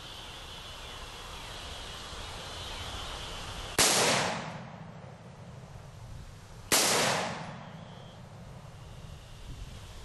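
Two rifle shots from a Bushmaster AR-15, about three seconds apart, each a sharp crack with a tail of about a second that dies away.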